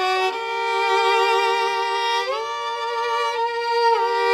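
Violin playing a slow, sustained melody with vibrato, gliding up to a higher note about two seconds in and sliding back down near the end, in the instrumental opening of a song.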